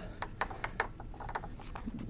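Old glass soda bottles clinking lightly against one another as they are handled: a scatter of small clinks with brief ringing, most of them in the first second.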